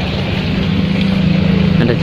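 A steady low engine hum over general background noise, fading near the end as a man's voice begins.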